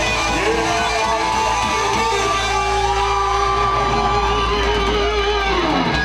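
Live rock band with electric guitars holding a final sustained chord, one long note held over it that bends down in pitch as the band cuts off near the end.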